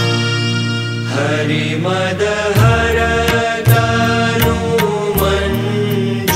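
Sanskrit devotional stotram chanted to music with a steady percussion beat; a single note is held for about the first second, then the sung melody moves on.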